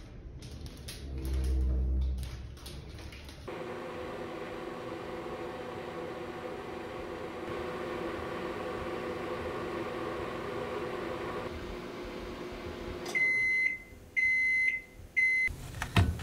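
Microwave oven running with a steady hum, followed near the end by three short high beeps, its end-of-cycle signal. In the first seconds there is a brief low rumble.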